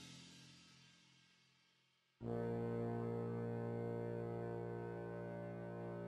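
Marching band show music: a loud chord rings out and fades to silence over the first two seconds, then a sustained brass chord comes in suddenly and is held steady.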